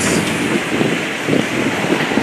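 Wind buffeting the microphone, an irregular rumbling noise that swells in gusts, strongest about a second and a half in.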